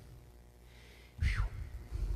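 Near quiet for about a second, then a short breathy vocal sound from a man, falling in pitch.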